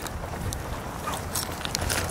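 Footsteps on grass and rustling from a handheld camera, with scattered light clicks over a low, steady background rumble.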